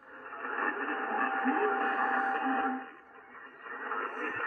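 Amateur HF transceiver's receiver audio on the 40 m band in lower sideband: band hiss through the narrow voice filter with a faint, garbled sideband voice and a steady whistle lasting about two seconds. It comes up at once and dips briefly near the three-second mark before returning.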